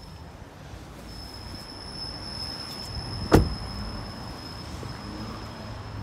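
A Jeep Renegade's car door shut once, a single loud thud about halfway through, with a faint steady high-pitched whine running behind it.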